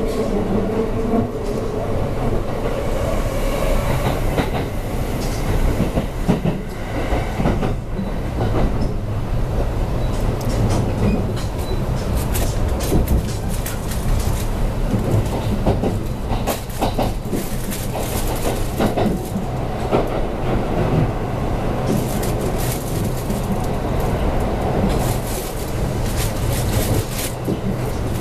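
Kintetsu 5820 series electric train running at speed, heard from inside the car: steady wheel-on-rail rumble with clickety-clack over rail joints. The Mitsubishi IGBT VVVF traction motors whine over it in the first few seconds, rising slightly, and again from about twenty seconds in.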